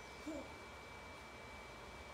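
Faint room tone with a steady high-pitched whine, broken about a quarter second in by one brief, soft vocal sound that bends up and down in pitch.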